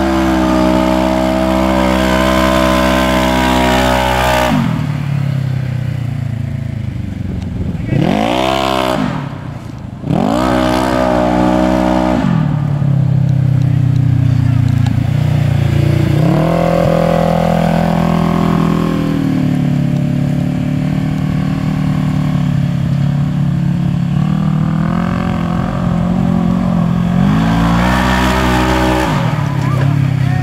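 2014 Polaris RZR 1000 side-by-side's parallel-twin engine revving hard. It is held at high revs for the first few seconds, then drops, with two sharp rev blips about eight and ten seconds in. It runs at lower revs through the middle with small rises and falls, and revs up again near the end.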